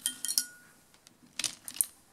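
Pens being set down on a tabletop: a few light clicks and clinks just after the start and a second cluster about a second and a half in, one with a brief ringing note.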